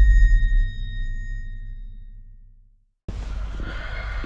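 Tail of a logo intro sting: a deep bass boom with high, bell-like ringing tones, fading away over about two and a half seconds. After a moment of silence, steady background noise cuts in near the end.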